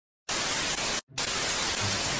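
Television static: an even white-noise hiss that starts suddenly, breaks off for an instant about a second in, then resumes.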